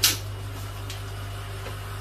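A short, sharp, noisy burst right at the start, over a steady low electrical hum, with a faint click about a second in.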